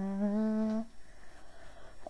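A cappella singer's held hummed note ("mm-hmm"), stepping down slightly in pitch at the start and stopping just under a second in. Then a pause of about a second with only faint room sound.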